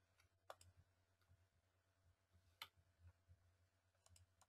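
Near silence with a few faint computer clicks, the two clearest about half a second in and about two-thirds of the way through, over a faint low hum.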